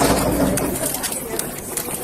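Indistinct voices with rubbing and knocking on a body-worn camera as its wearer walks, including a bump with a low rumble right at the start.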